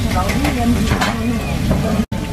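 Busy restaurant ambience from an open kitchen: a steady sizzle of frying with background chatter, and a few short clinks and scrapes of a metal spoon against a stoneware bowl.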